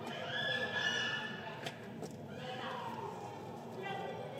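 Background voices of people, with a high-pitched call held for about a second just after the start and a falling call in the middle.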